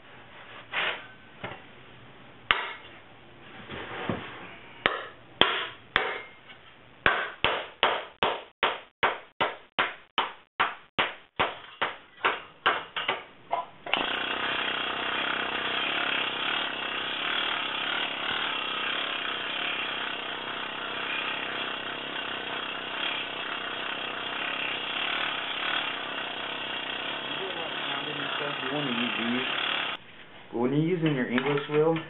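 Sheet steel being hammered, a run of sharp metal strikes that speed up to about three a second. About halfway through, a pneumatic planishing hammer (an air hammer in a C-frame) starts up with a loud, steady, rapid rattle as it smooths the panel.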